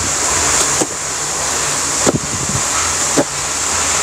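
Steady rushing background noise with a few faint knocks about a second apart.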